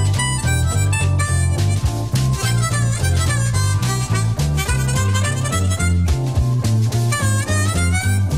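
Harmonica playing an instrumental solo in a jazzy song, its notes bending up and down over a bass line that steps from note to note.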